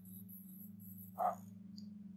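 Pen tip scratching across paper in a run of short strokes while drawing, with one brief, louder scrape about a second in. The scratching then fades, over a steady low drone.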